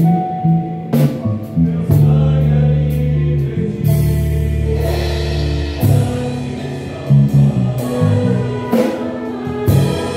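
Electric bass playing held low notes along with a gospel hymn, with a choir singing and a drum kit striking through it.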